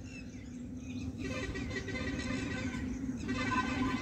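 Faint outdoor background: a few bird chirps over a steady low hum, slowly getting louder.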